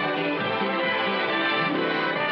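Orchestral film-score music playing steadily, with violins among the instruments.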